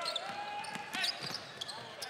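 Basketball bouncing on a hardwood court during live play, a few sharp bounces, under indistinct arena voices and a steady held tone for about the first second.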